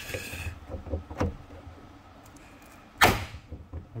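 Paintless dent repair glue puller being tightened on a car hood, with faint clicks, then one sharp pop about three seconds in as the hood's sheet metal springs under the pull and part of the dent comes out.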